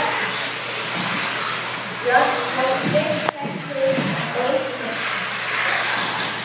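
Radio-controlled 4wd buggies racing on an indoor track, a steady rushing noise from motors and tyres, with people's voices in the background and a sharp click about three seconds in.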